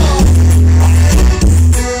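Live tropical (cumbia-style) dance music from a keyboard-led band, an instrumental stretch without singing. It is loud, with a heavy bass line.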